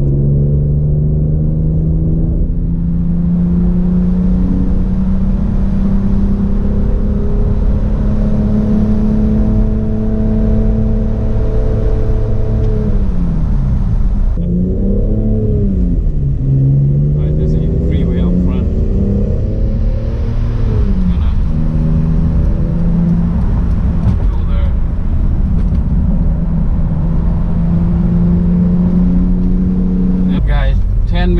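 BMW E46 M3's inline-six engine heard from inside the cabin while driving, over road noise: a steady drone whose pitch climbs slowly for the first dozen seconds, falls and rises again a couple of times around the middle, then holds fairly steady.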